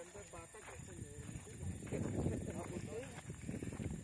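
Faint, indistinct talking in the background, with a burst of low, rough rustling noise in the middle, about two seconds long.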